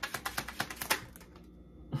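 A deck of tarot cards being shuffled by hand: a rapid run of card clicks for about the first second, then quieter handling.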